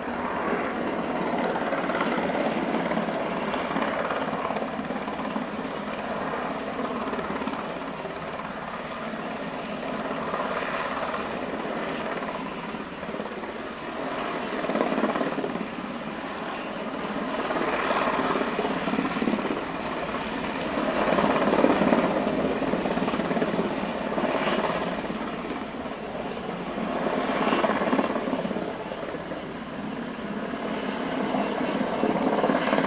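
A military UH-60 Black Hawk helicopter flying overhead, its rotor and engine noise steady throughout and rising and falling in loudness several times as it circles, with some voices underneath.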